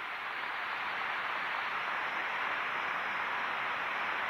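Arena audience applauding steadily.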